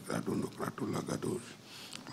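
Indistinct male speech through a microphone and PA, ending in a brief breathy hiss.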